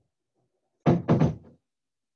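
Two quick knocks about a quarter second apart, loud and sudden, with a short fading tail.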